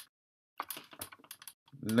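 Computer keyboard keystrokes: a single key click at the start, then a quick run of about ten keystrokes about halfway through.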